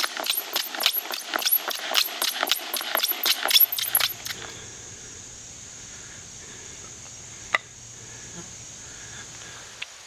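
Bow drill in use: the wooden spindle grinding and squeaking in the fireboard with each stroke of the bow, about four strokes a second, stopping about four seconds in. After it a faint steady hiss and one sharp click.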